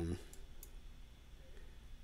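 Two faint computer mouse clicks close together, about half a second in, over a low steady hum.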